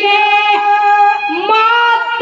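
A boy singing a Haryanvi ragni in a high, held voice, sustaining one long note, then sliding up to a higher note about a second and a half in.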